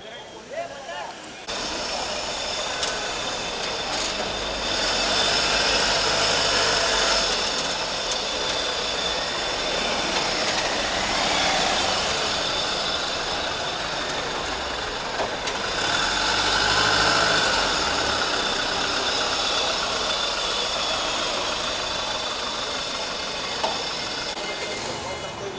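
A white Tata hearse van's engine running as the van moves slowly past at close range, over steady street noise with voices.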